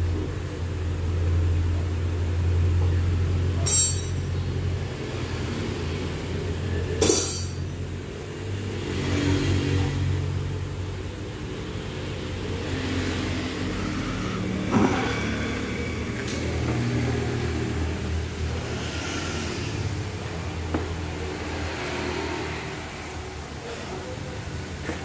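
A low, steady engine hum of workshop machinery running, louder in the first few seconds and then easing. Three sharp metallic clinks, like tools against metal, come at about four, seven and fifteen seconds.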